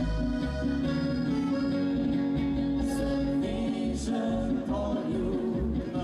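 Slovenian alpine folk quintet playing live, a regular oom-pah bass beat under the melody; a new wavering line comes in about halfway through.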